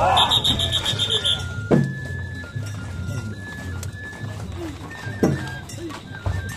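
A shrill whistle blown in rapid pulses for the first second or so, then festival hayashi music: a high bamboo flute melody over taiko drum beats, with two sharp drum strikes, and voices of the crowd.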